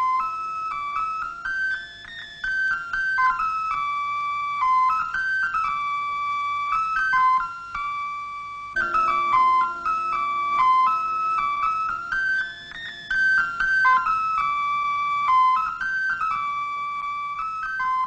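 Soundtrack music: a solo pipe plays a lilting melody over a low held note. The same phrase is heard twice, starting over about halfway through.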